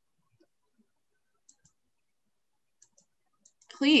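Near silence with a few faint, sharp computer mouse clicks spaced over a couple of seconds, as strokes are drawn in a pixel-art editor.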